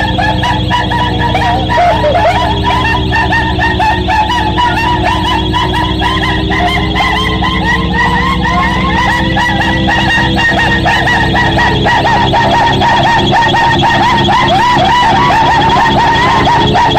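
Live electronic noise music: a steady low hum under a tone that slowly wavers up and down about every eight seconds, buried in a dense, continuous layer of short chirping, warbling squeals.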